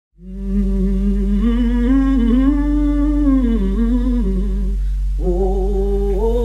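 Blues harp (Hohner diatonic harmonica) playing a lick of held, bent and wavering notes, with a short break about five seconds in before the next phrase starts. A steady low drone sits underneath.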